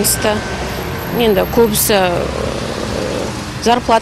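A woman talking in short phrases with pauses, over the steady sound of road traffic passing on the street.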